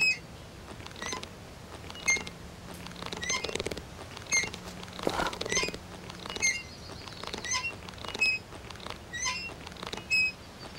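Cartoon sound effects: a series of short, high squeaks, about one a second, with a couple of soft scuffing sounds in between.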